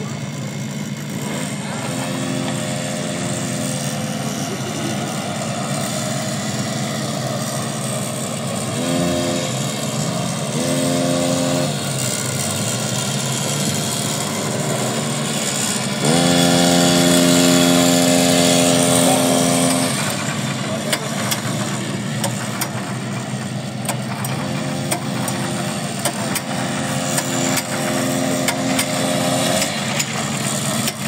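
Small engine of a motorized drift trike running, with quick revs about a third of the way in and a longer, louder rev held for about four seconds past the middle.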